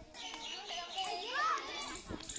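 Many children's voices calling and chattering while they play outdoors. One call rises and falls more clearly about halfway through.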